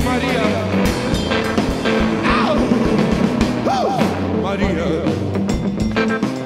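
A two-piece rock band playing live: electric guitar and drum kit, with a voice singing over it.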